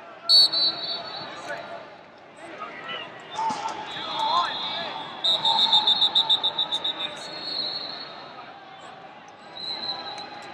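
Referees' pea whistles in a large echoing arena: a sharp blast right at the start and a long trilling blast about five seconds in, over shouts from coaches and spectators.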